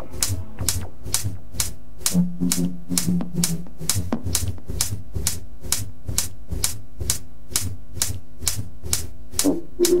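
Techno from a DJ mix: a steady kick drum about twice a second under sharp, dry clicking hi-hats about four a second, with a low held note entering about two seconds in for a second and a half.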